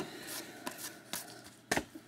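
Trading cards handled in a gloved hand, with soft rustling and a few light clicks as they are flipped through. About three-quarters of the way through comes one sharp tap as the stack is set down on the table.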